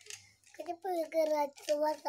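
A toddler's voice: a string of short, high-pitched babbled syllables, starting about half a second in.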